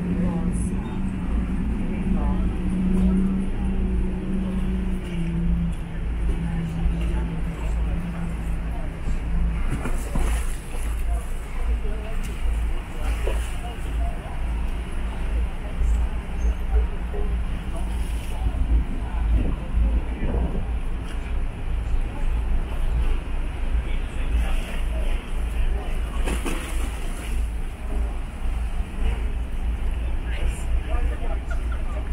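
A large container ship passing close by: its engine hums steadily over a deep, constant rumble, and the hum fades after about nine seconds as the ship moves away. The ship's wash churns against the quay.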